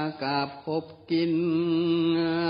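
A monk's voice chanting a Northern Thai sermon in its drawn-out, sing-song style: a few short sung syllables, then a long held note starting about a second in.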